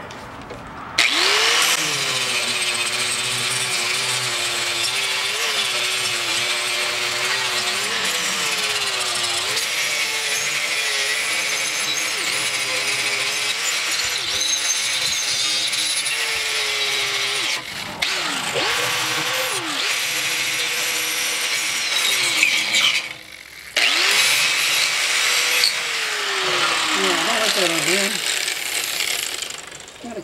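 Angle grinder running against the steel truck frame, its motor whine wavering in pitch as the disc bites into the metal. It lets off briefly twice, a little past halfway and again about three-quarters through, spinning back up each time, and winds down near the end.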